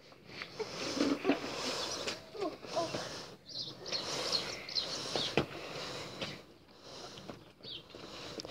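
Outdoor noise with rustling or wind on the microphone, faint distant children's voices and a few short high chirps, and one sharp click about five and a half seconds in.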